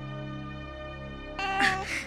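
Steady background music, then about one and a half seconds in an infant starts crying loudly, a high wail that falls away at its end.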